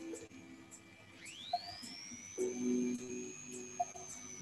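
Faint electronic timer sound: soft high ticks at a steady pace, with a thin whistle-like tone that slides up about a second in and then holds high.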